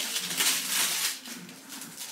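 Rustling and light clattering as objects are handled by hand, loudest in the first second and then dying down.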